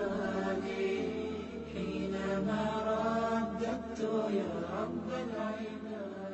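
Melodic vocal chanting, long held notes gliding up and down, over a low steady hum.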